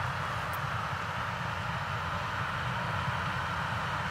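New Holland CX combine harvester with a Geringhoff corn header running steadily while harvesting standing maize: an even machine noise with a low rumble underneath.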